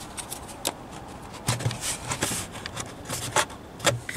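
Hands working at the plastic cover and clips of an under-bonnet fuse box, trying to pry it open: scattered irregular plastic clicks and scrapes.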